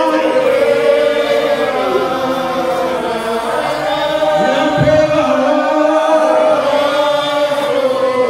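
A slow Spiritual Baptist hymn sung by a man on a microphone, with other voices joining in. The notes are long and drawn out, gliding between pitches.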